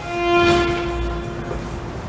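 Solo violin bowing one long held note that swells and then fades away about a second and a half in.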